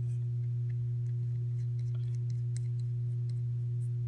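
A steady low electrical hum holds one pitch throughout, with a faint higher overtone. A few faint light clicks come from the framing nailer's metal rear exhaust cover and parts being handled.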